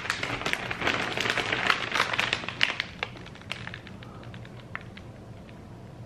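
Plastic snack bags of popcorn crinkling as they are handled and lifted. The crackling is dense at first and thins to scattered ticks after about three and a half seconds.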